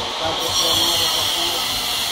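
A steady, loud hiss that gets brighter about half a second in.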